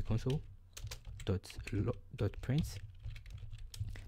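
Computer keyboard typing: a quick, uneven run of keystrokes as a line of code is entered.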